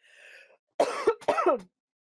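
A woman clearing her throat through a video-call microphone, in two short voiced bursts about a second in, after a faint breath.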